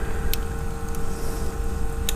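Steady low background hum with a faint steady tone, and a faint click about a third of a second in as metal tweezers touch the phone's metal SIM holder.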